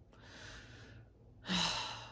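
A woman sighing: a soft, breathy exhale lasting about a second, then a second, louder breath with a brief voiced start about a second and a half in.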